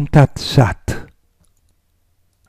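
A man's voice speaking a short closing phrase that includes 'Om'. It ends about a second in and is followed by near silence.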